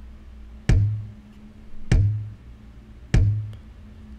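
Programmed kick drum pattern played on its own: a stock R&B Remix Kit kick sample in Logic Pro X hitting three times, evenly about 1.2 seconds apart. Each hit is a deep, short thump with a sharp click on top.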